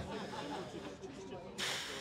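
Pause between a man's sentences: faint background noise, then a short, sharp breath drawn in, heard as a brief hiss near the end.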